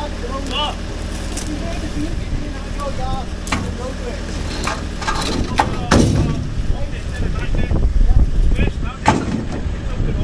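Old plastic window frames clattering as they are thrown into a steel skip: a few sharp crashes, the loudest about six and nine seconds in, over the steady low running of a skip lorry's engine.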